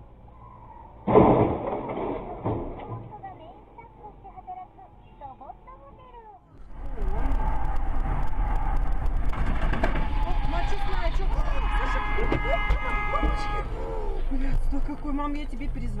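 Dashcam audio of road traffic: a sudden loud crash about a second in, fading over the next few seconds, then after a cut the loud steady road and engine noise of a car travelling at speed, with a held pitched tone sounding for about a second and a half near the end.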